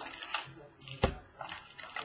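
Hands opening a cardboard trading-card box and pulling out its contents: short scraping and crinkling sounds, with a single thump about a second in.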